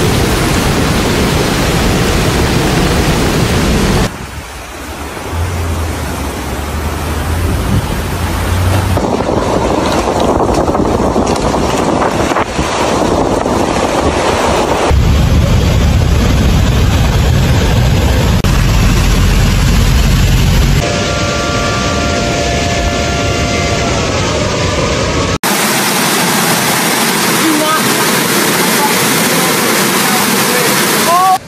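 Rushing floodwater and wind buffeting a phone microphone, in several short clips spliced together, so the noise changes abruptly every few seconds. A steady tone of a few pitches sounds for about four seconds about two-thirds of the way through.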